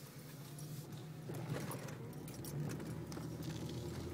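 Car engine and road noise heard from inside the cabin while driving slowly, a low steady hum that grows a little louder in the second half, with a few faint clicks.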